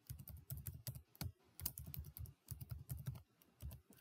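Faint computer keyboard typing: quick runs of keystrokes with short pauses between them, as a password is typed into a field and then typed again to confirm it.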